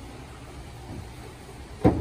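Aquarium lid being lowered and dropping shut with one sharp, loud clack near the end, over a low steady hum.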